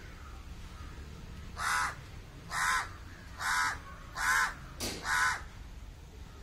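A crow cawing five times, harsh calls just under a second apart, starting about a second and a half in.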